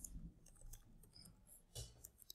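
Faint computer keyboard keystrokes: a few light, irregular clicks of someone typing, over near silence.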